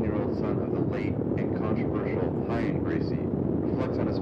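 Steady low rumble with indistinct, overlapping voices.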